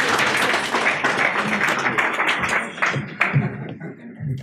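Audience applauding, a dense run of hand claps that thins out and dies away about three seconds in.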